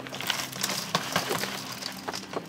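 Bark and potting-soil mix pouring and sliding out of a tipped plastic bucket onto a table: a dense rustling crackle of bark chips and soil, with many small clicks.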